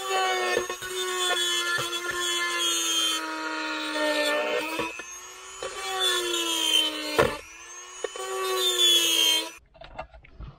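Corded Dremel-style rotary tool grinding out a hole in a car's plastic center-console trim: a high, steady whine that sags in pitch each time it is pressed into the plastic and recovers, then stops abruptly near the end.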